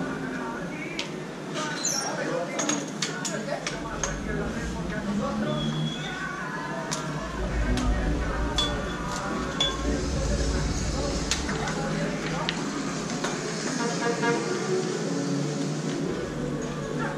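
Scattered metallic clicks and clinks from hands-on work at a spoked motorcycle wheel on a tyre-changing machine, with voices in the background and a low rumble in the middle.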